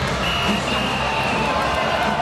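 Ballpark crowd din with a high, steady tone held for about a second and a half, broken once briefly near its start.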